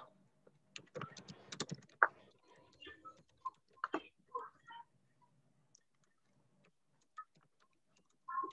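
Faint, irregular clicking of computer keyboard keys, busiest in the first two seconds and thinning out after about five seconds.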